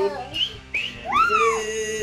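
A young girl's high voice squealing: two short upward squeaks, then a higher squeal that rises and falls, then a long held note near the end, as she cheers.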